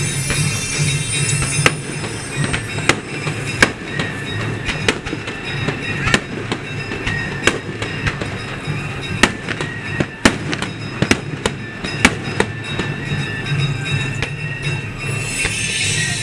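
Aerial firework shells bursting: a string of sharp bangs at irregular intervals, roughly a second apart, over music playing.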